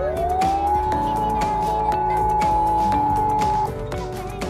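Beat-note whistle from a Tecsun PL-680 shortwave radio in upper-sideband mode, made by a CW kit's local oscillator as its beat-frequency knob is turned. A single tone rises in pitch over about the first second, holds steady, then cuts off shortly before the end. Background music plays underneath.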